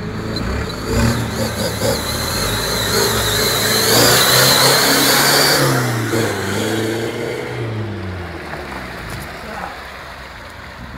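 A 4x4's engine revving up and down as it drives through a river ford, with water rushing and splashing around it, loudest about four to six seconds in before easing off. A thin, wavering high whine runs through the first half.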